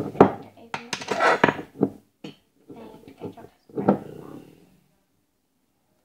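Knocks, clinks and scrapes of a chocolate-spread jar and a knife being handled over a plate, busiest in the first two seconds; the sound drops to silence near the end.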